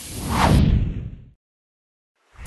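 A whoosh transition sound effect that swells, sweeps downward in pitch over a deep rumble, and dies away about two-thirds of the way through.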